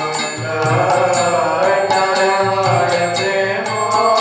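Devotional chanting: singing in a flowing melody, with hand cymbals struck in a steady beat about four times a second.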